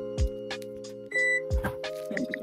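Background music with a steady beat: sustained chords over a kick drum and light high percussion. One short, high beep sounds a little over a second in.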